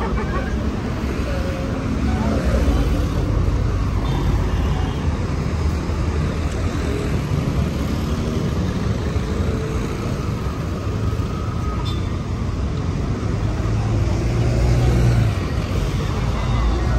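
Road traffic on a busy street: cars and buses running past with a steady low rumble, growing louder near the end as a bus passes close by.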